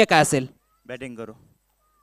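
A man speaking Marathi-Hindi commentary over the public-address microphone, announcing the toss decision. After about a second comes a short, fainter stretch of voice.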